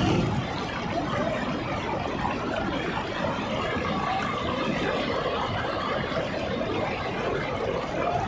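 Flooded stream swollen by heavy rain rushing across a submerged road: a steady, even rush of turbulent water.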